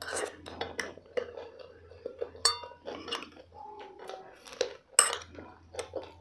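Tableware sounds from eating by hand off ceramic plates: scattered light clicks and small clinks of plates and a spoon, with one ringing clink about two and a half seconds in and a sharper click about five seconds in.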